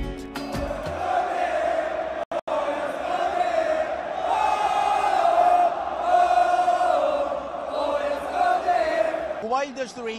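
A large stadium crowd of Saudi Arabia supporters chanting together in long held notes, each about a second.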